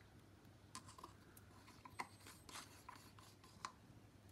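Wooden stir stick scraping and tapping acrylic paint out of a plastic cup: faint, scattered small scrapes and clicks.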